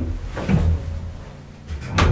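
Hinged elevator landing door being handled: clunks and latch knocks about half a second in and again near the end, over a steady low hum.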